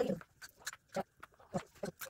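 Ludo pieces tapped along a cardboard board as they are moved, a string of short taps a few tenths of a second apart.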